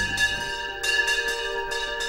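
Bells struck several times in quick succession, each strike leaving long ringing tones.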